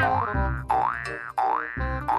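Cartoon 'boing' sound effect repeated three times in quick succession, each a sharp twang sliding upward in pitch, over background music.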